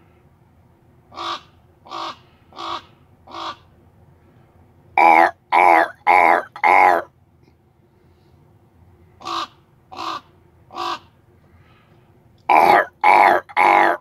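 Common raven caws traded back and forth in groups: four fainter calls, then four much louder ones, then three fainter and three louder. The louder groups sound like a person inside the vehicle cawing back at the raven on the hood.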